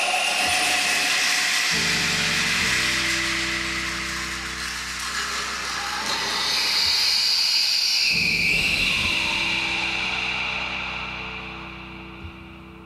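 Live percussion passage: shimmering cymbal and gong washes, some of their tones slowly gliding in pitch, over low sustained bass notes. The whole sound dies away over the last few seconds.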